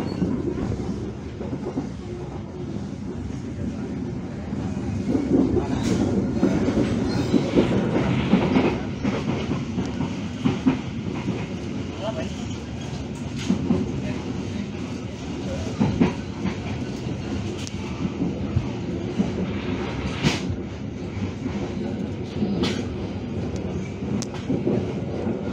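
Passenger train running along the track, heard from inside the coach at an open window: a steady rumble of wheels on the rails, broken by irregular sharp clacks as the wheels cross rail joints.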